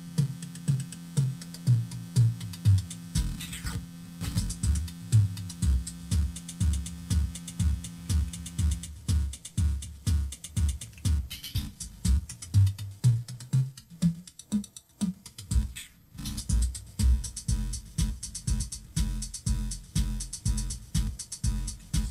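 Home-built microcontroller drum machine playing a fast, even electronic beat of low kick-drum thumps, with its 8-bit-style synthesizer voice layered on top. The synth holds a steady low tone for the first half, then its pitch is moved up and down in short notes.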